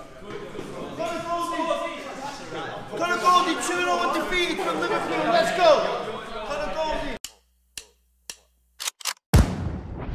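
Several men's voices talking and calling out over one another in a gym hall, with no clear words. Then come about two seconds of silence broken by a few sharp clicks, and loud electronic music starts near the end.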